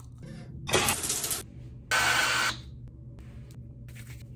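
Crunch of a bite into crisp bacon about a second in, followed at about two seconds by a short, steady hiss that starts and stops abruptly.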